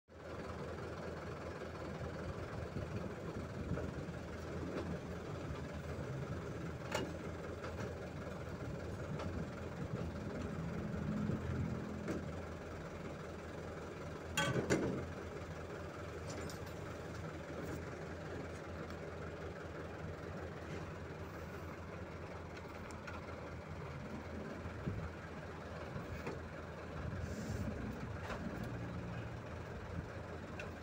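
Truck engine running steadily, with a few sharp knocks, the loudest a short clatter about halfway through.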